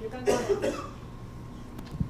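A person coughing briefly about a quarter second in.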